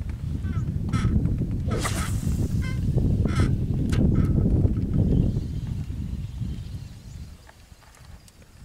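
Wind buffeting the microphone in gusty low rumbles, with a few short calls over it in the first four seconds. The wind eases off near the end.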